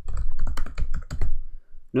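Rapid typing on a computer keyboard, a quick run of keystrokes that stops about a second and a half in.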